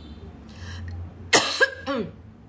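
A woman coughs about a second and a half in: a sharp burst followed by a short voiced rasp.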